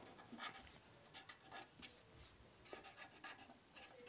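Faint scratching of a pen writing words on paper, a run of short strokes.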